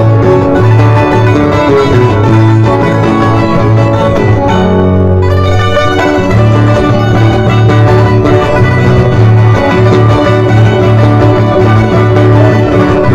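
Andean folk string music for the Qorilazo dance: plucked strings with violin, playing continuously.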